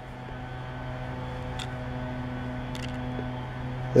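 A steady low hum, even in pitch, with a couple of faint clicks partway through.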